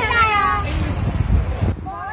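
A child's high-pitched voice, drawn out and falling in pitch, over a steady low rumble.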